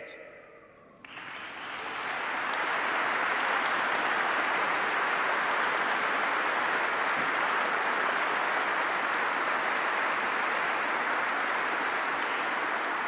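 Large audience applauding: after a brief lull, the applause starts about a second in, swells quickly and then holds steady.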